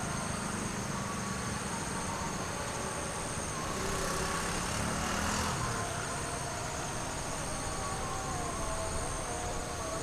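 Insects calling in steady high-pitched tones, over the low rumble of a distant approaching diesel train. Near the middle, a brief swell of hiss rises and fades.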